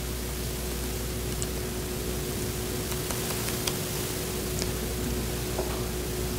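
Steady room tone: an even hiss with a faint steady hum, which stops shortly before the end, and a few faint ticks.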